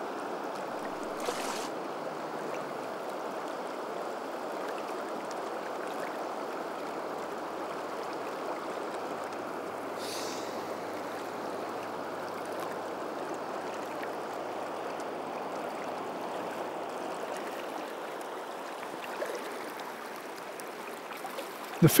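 Flowing river water rushing around a wading angler: a steady, even rush.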